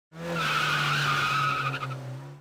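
Cartoon sound effect of car tyres screeching as a car speeds in. It is a steady, high squeal over a low hum, and it fades near the end.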